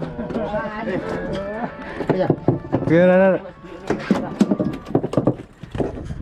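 Men talking and calling out, with one long drawn-out call in the middle, and a quick run of sharp knocks and taps in the second half.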